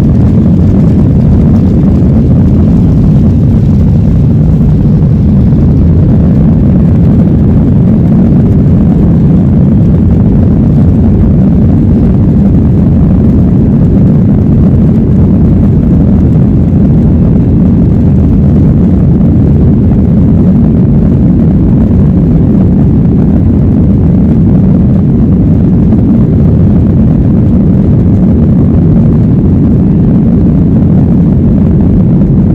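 Jet airliner engine noise heard from inside the passenger cabin: a loud, steady low rumble with no break as the plane moves along the airport.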